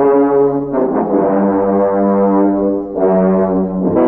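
Music bridge of sustained brass chords, the chord changing about a second in and again near the end.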